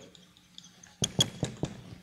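A quick run of about five sharp clicks or knocks about a second in, over a faint steady low hum.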